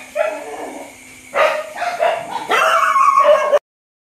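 Several dogs at a shelter barking and yipping in three bursts, the last lasting about a second. The sound cuts off suddenly shortly before the end.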